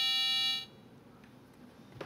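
A steady, buzzy electronic tone from an Arduino, played through a small speaker by an amplifier circuit. It cuts off suddenly about half a second in, leaving only faint room tone.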